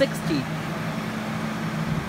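Steady low machine hum with a background hiss, after a brief bit of voice near the start.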